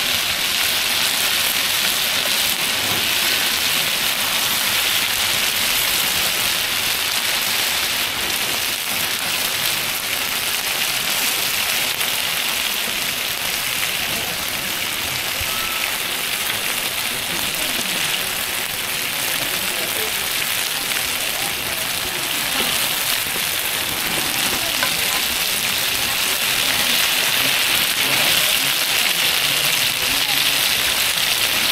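A large wide pan of shengjian buns (chive-and-vermicelli filling) and flat pan-fried meat dumplings sizzling in oil, a steady continuous hiss.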